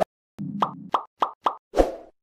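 Animated outro sound effects: a quick run of four pops, then a louder, deeper hit near the end.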